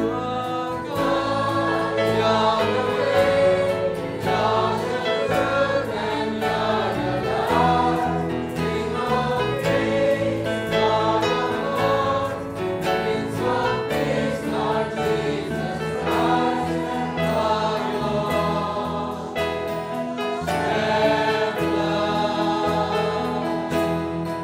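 Choir singing a Christian worship song.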